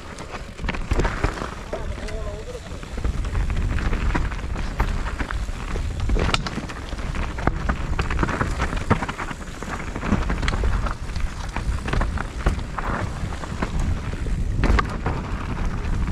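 Mountain bike riding down a rough dirt singletrack: a steady low rumble of wind buffeting the microphone, with tyres on dirt and the bike's frame and chain rattling and knocking over the bumps.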